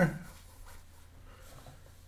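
A man's voice trails off at the very start, then a pause of quiet room tone with a faint steady low hum.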